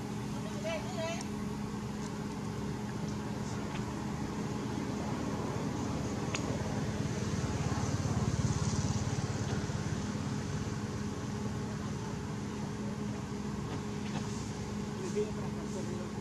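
Steady low hum over outdoor background noise that grows louder for a few seconds around the middle, with a brief wavering call about a second in and another faint one near the end.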